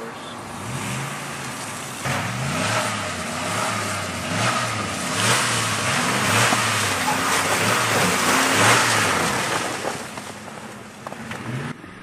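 Ford Raptor pickup's V8 revving up and down over and over as its chained tyres spin and throw snow, with a loud hiss of spraying snow: the truck is trying to power out of deep snow where it had got stuck. The revving swells about two seconds in and dies away near the end.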